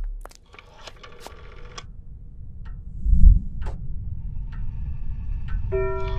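Clicks of a white rotary-dial telephone being dialed, with a low thump about three seconds in. Steady sustained tones come in near the end.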